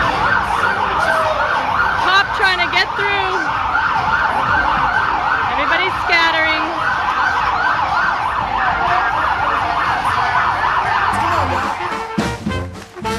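Emergency-vehicle siren in fast yelp mode, wailing up and down about three times a second. A few shouts from the street crowd are heard over it, and it stops near the end.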